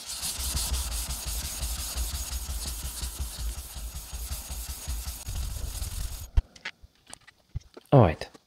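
Atoma 600 diamond plate rubbed rapidly back and forth over a wet Naniwa 1000-grit synthetic water stone, a steady wet scraping that raises a slurry on the stone. The rubbing stops about six seconds in, followed by a single knock.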